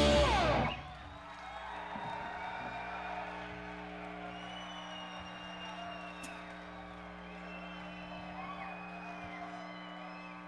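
A rock band's song ends with its last crash of drums and guitar ringing out in the first second. Then come faint crowd cheers, whoops and a whistle under a steady amplifier hum.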